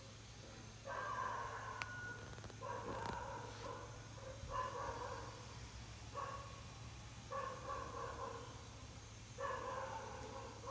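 A dog barking in the background, about six barks spaced a second or two apart, over a low steady hum.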